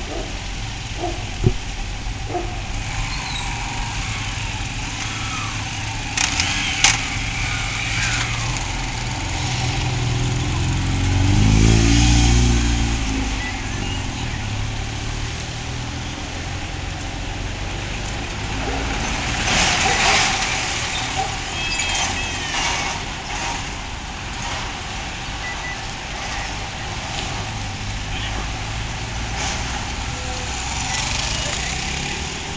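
Street traffic ambience: a steady low rumble, with a vehicle passing that is loudest about twelve seconds in. There are a couple of sharp knocks early on.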